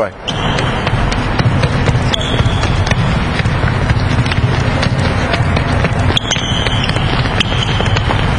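Busy gymnasium during a footwork drill: indistinct chatter of many people, with many quick footfalls on the court floor and a few brief high sneaker squeaks.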